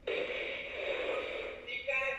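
Clementoni Doc toy robot's small electric drive motors whirring as it carries out its programmed moves, starting suddenly, with a brief pitched sound near the end.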